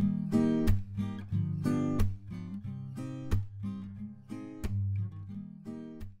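Background music: an acoustic guitar strumming chords, getting quieter toward the end as the piece winds down.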